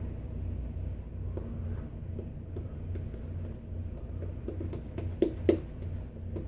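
Shaving brush working lather on the face: soft, irregular wet brushing and squishing, with a couple of sharper squishes about five seconds in, over a steady low hum.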